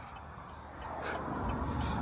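Engine-off pickup truck rolling slowly on asphalt as it is pushed by hand: a low, even rumble of tyres and road noise that grows louder in the second half.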